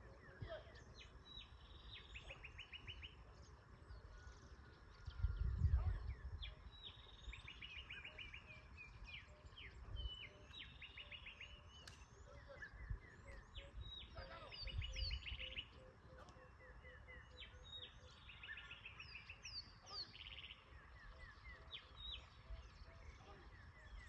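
Several wild birds calling and singing, with repeated chirps and fast trilled phrases. Two low rumbles come through, about a quarter of the way in and again past halfway.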